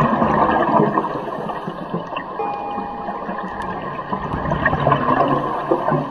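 Underwater noise: a steady, gurgling rush of water and rising air bubbles, with a few faint musical tones under it.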